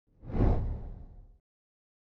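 A whoosh sound effect with a deep low rumble for an opening logo, swelling to its peak about half a second in and fading away by about a second and a half.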